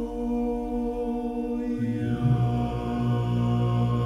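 Dalmatian klapa, a male a cappella ensemble, holding long sustained chords in close harmony. About two seconds in, the bass voices come in on a low held note beneath the chord.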